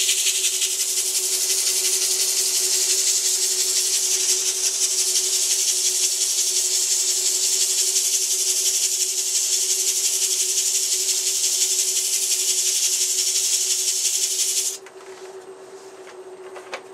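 80-grit foam-backed sandpaper pressed against a maple ball spinning on a wood lathe: a loud, steady hiss that stops abruptly about fifteen seconds in, with a steady hum underneath.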